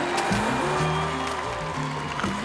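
Music with a bass line held on one note and then stepping to another, and a short gliding tone near the start.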